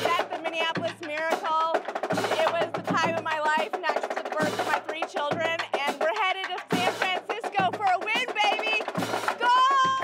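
A drumline of drums and hand cymbals playing a steady beat, with a low drum hit about every second, while excited voices shout and cheer over it.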